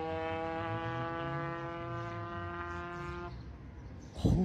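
Honda Nova RS 110 two-stroke drag bike engine held flat out at a steady high pitch on its run down the strip. It cuts off a little over three seconds in.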